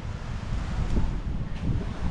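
Wind buffeting the microphone, a steady low rumbling noise.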